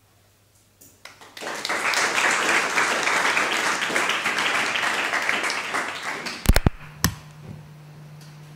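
Audience applause that starts about a second in, lasts some five seconds and dies away. Two sharp knocks follow, then a low steady hum.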